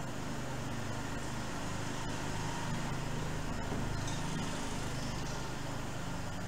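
Steady room noise: a low mechanical hum with an even hiss, swelling slightly in the middle, and a few faint clicks.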